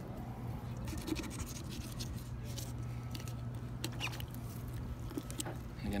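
A small Dexter knife blade scraping and slicing around a striped bass's cheek, in short scratchy strokes, over a steady low hum.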